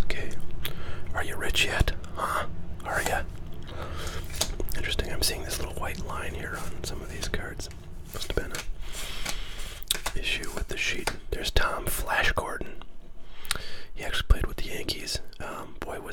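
A man whispering, with the light scrape and tap of cardboard trading cards being slid off a stack in his hands.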